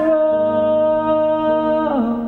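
A male pop singer holds one long sung note over keyboard accompaniment, and the note falls away near the end.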